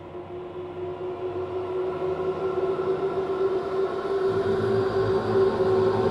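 Eerie synthesized drone with a long held tone, swelling steadily louder, a deeper hum joining about four seconds in.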